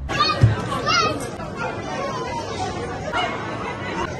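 Children shouting and squealing in high voices near the start, over the steady chatter of a crowd of kids and adults.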